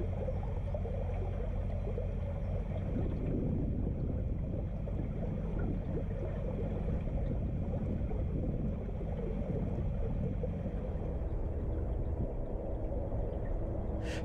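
Narrowboat's inboard diesel engine running steadily at cruising speed, a low even hum, with water moving along the hull.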